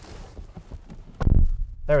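A brief low, muffled thump with a short rumble about a second in, after a faint low background.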